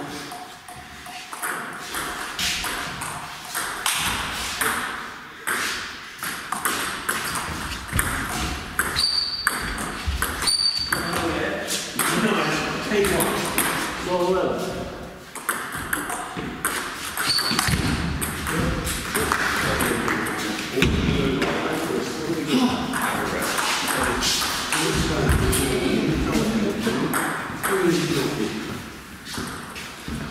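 Table tennis rally: a string of sharp clicks of the ball against the bats and the table, ringing a little in a large hall, over background talk.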